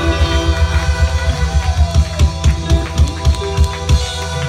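Live ska band playing loudly: drums, bass and guitar keeping a steady beat, with the drum hits standing out more in the second half.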